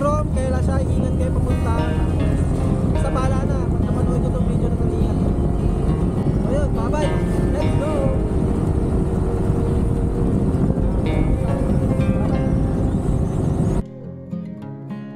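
Wind and road noise from a moving motorcycle, with voices calling out several times over it. The sound cuts off abruptly near the end.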